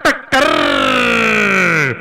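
A man's long drawn-out shout on one held vowel, lasting about a second and a half, sliding down in pitch and dropping sharply just before it cuts off.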